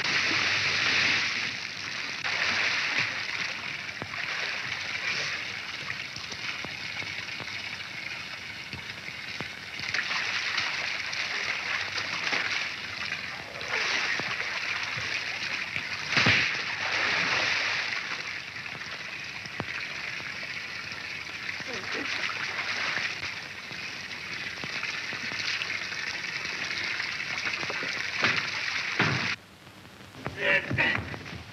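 Water splashing and sloshing in a shallow fountain pool as people thrash about in it, a dense rush of splashing that swells and eases in long stretches.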